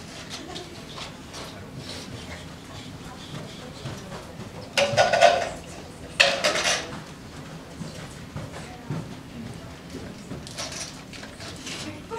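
Classroom bustle of students moving about and talking under their breath, with small clicks and clatter of game chips being handled and dropped into cups. Two louder bursts of noise stand out, about five seconds in and again a second and a half later.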